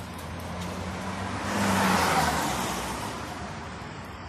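A car passing by on the street, its engine and tyre noise swelling to the loudest point about two seconds in and then fading away.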